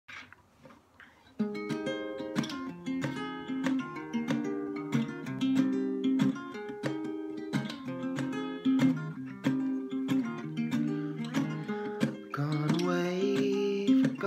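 Acoustic guitar playing a chordal intro that starts about a second and a half in, after a brief quiet moment. Near the end a man's singing voice comes in over the guitar.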